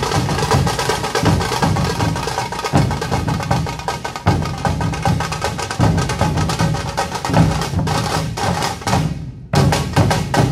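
Puneri dhol tasha ensemble playing loud and fast: many dhol barrel drums give deep beats under the rapid, sharp cracks of the tasha kettle drums. Near the end the playing breaks off briefly, then ends on a last short flurry of strokes.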